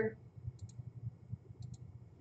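Computer mouse button clicks: two quick clicks about a second apart, each a crisp pair of ticks.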